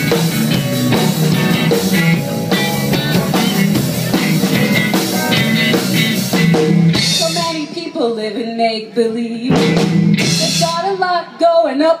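A live rock band plays an instrumental passage on drums, bass guitar and electric guitar. About seven seconds in, the full band drops back to a sparser stretch with bending melodic lines and brief gaps. The singer comes back in right at the end.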